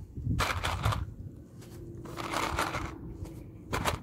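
Dry penne pasta rustling and clicking in a plastic tub as a hand rummages for pieces, in three short bursts, with a sharper clatter near the end, over a low background rumble.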